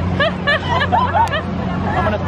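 Several teenage girls laughing hard together in rapid high-pitched bursts, over a steady low mechanical hum.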